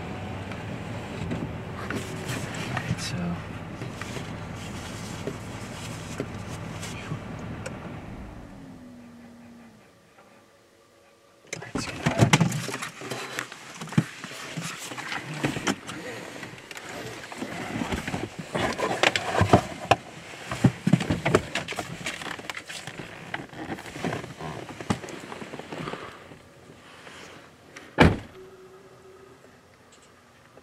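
A GMC pickup truck's engine idling, then winding down and shutting off about eight to ten seconds in. After it comes rustling, clicking and knocking from moving about inside the cab, and one loud thunk near the end as a truck door shuts.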